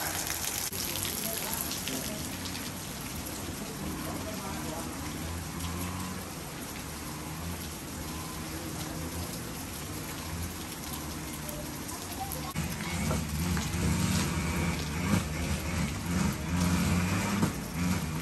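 Light rain pattering steadily. About two-thirds of the way in, a louder low drone joins it.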